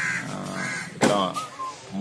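A crow cawing, one loud harsh call about a second in, over the murmur of voices.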